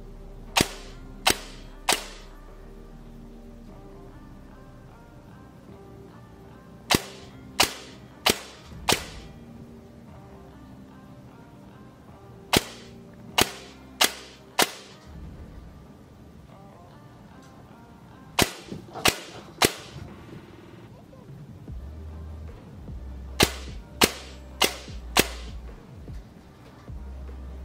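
ASG Scorpion Evo airsoft AEG with 12:1 gears and an 18K high-torque motor, running on pre-cock, firing single shots. The shots come in five groups of three or four, about two-thirds of a second apart, with pauses of a few seconds between groups. This is a test of each raised pre-cock setting to find the point where the gun starts to double-shoot.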